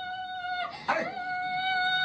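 A woman wailing in long, high-pitched cries, each held steadily on one note for over a second, with a short break and a gasp about three quarters of a second in. The cries are heard played back from a computer's speakers.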